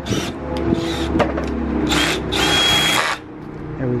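Cordless drill running in short bursts, spinning the polishing-pad adapter in its chuck, with a few clicks along the way; it stops about three seconds in.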